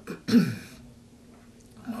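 A man clearing his throat once, briefly, about half a second in, followed by quiet room tone.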